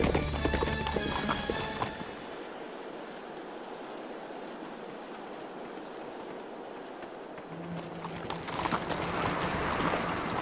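Horse hooves clip-clopping over background music for about two seconds. This gives way to a steady hiss of wind in the trees, which swells near the end as the wind picks up.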